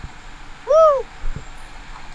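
A person's short hooting vocal sound, once, rising and then falling in pitch, over low sea-surface and wind noise.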